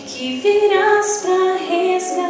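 A young woman singing solo into a handheld microphone, holding long notes that step between pitches.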